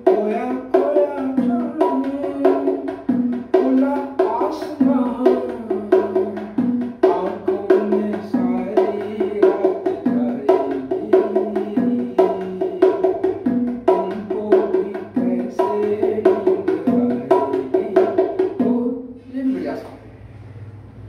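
Bongos played by hand in a fast, steady rhythm of many strokes a second, the drum heads ringing at a few distinct pitches; the playing stops just before the end.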